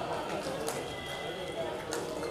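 Voices singing a Hindi devotional bhajan, the congregation's response between the leader's lines, with a couple of sharp clicks or claps, one near the middle and one near the end.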